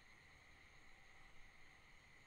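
Near silence: only a faint steady hiss of room tone.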